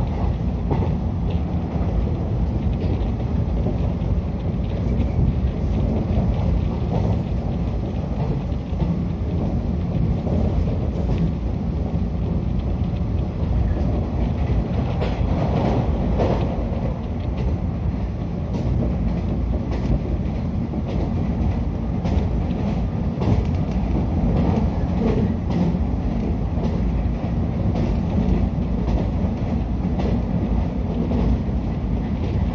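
Running noise inside a 113 series electric train car moving at speed: a steady low rumble of wheels on rails, with occasional faint clicks.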